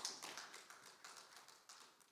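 Near silence, with a faint tap at the start and a few light ticks after it from a hand on a music stand.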